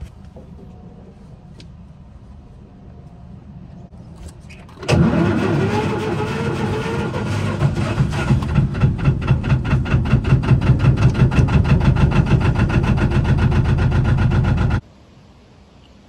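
A narrowboat's Lister diesel engine starting with a turn of the key, catching about five seconds in and settling into a steady idle with an even, regular beat, until the sound breaks off abruptly near the end.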